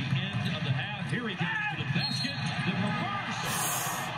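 NBA game broadcast playing at low level: a commentator talking over arena crowd noise, with a basketball bouncing on the hardwood court.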